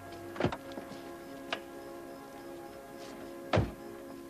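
Two car doors shut about three seconds apart, with a lighter click between them, over soft sustained background music.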